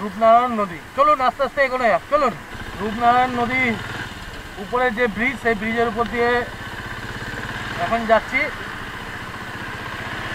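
Royal Enfield single-cylinder motorcycle engine starting to run steadily about two and a half seconds in as the bike sets off, with wind and road noise building in the second half. People talk over the first part.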